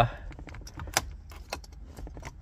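Light, scattered metallic clicks and ticks from a small metal tool being handled at a car radio's plastic trim ring, with one sharper click about a second in.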